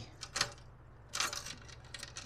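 A few short metallic clicks and jingles of a bunch of keys as one is tried in the lock of an aluminium diamond-plate toolbox, about half a second in and again just after a second; the key is the wrong one and does not open the lock.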